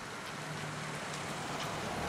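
Steady outdoor street ambience: an even hiss of background noise with a faint low hum.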